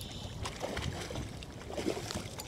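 Steady low wind and water noise aboard a drifting boat, with no distinct event standing out.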